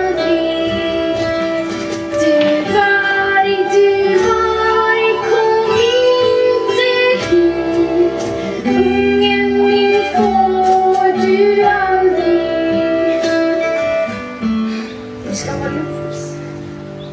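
A song sung by a female voice over guitar accompaniment, a slow melody of long held notes that thins out and grows quieter near the end.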